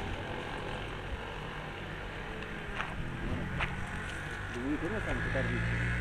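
Low steady hum of a standing passenger train under background voices, with a few short clicks; the hum gets louder near the end.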